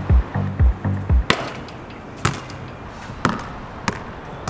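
Background music with a heavy bass beat that drops out about a second in, followed by four sharp knocks roughly a second apart.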